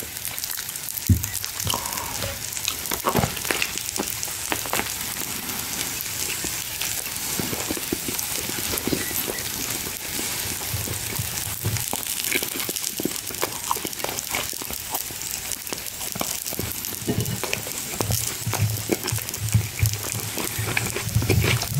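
Close-miked chewing and mouth sounds of a person eating: many small crackling clicks over a steady hiss.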